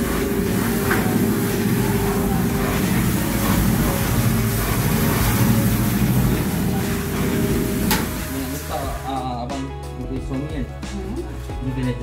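Motor-driven paddle stirrer of a 150-litre stainless steel cooking kettle running, the paddle arm turning in the steel pan with a loud steady machine noise that cuts off about nine seconds in.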